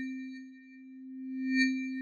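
Synthesized transition sound effect: a steady low electronic tone with a faint high chime-like shimmer, fading and then swelling again near the end.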